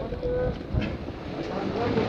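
Low rumble from wind and handling noise on a phone microphone, with bystanders' voices talking in the background.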